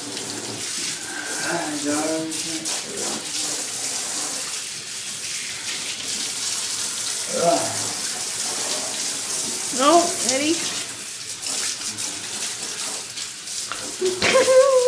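Handheld shower sprayer running water over a dog in a bathtub, a steady hiss of spray, with a few short voice sounds about a second, seven and ten seconds in.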